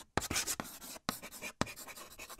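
Chalk writing on a chalkboard: a longer scratchy stroke, a brief pause about a second in, then a run of shorter scratches and taps as letters are written.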